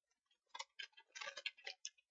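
Computer keyboard being typed on: a quick, irregular run of faint key clicks starting about half a second in.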